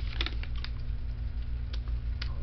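A quick cluster of light clicks and crinkles, then one more click near the end, over a steady low hum.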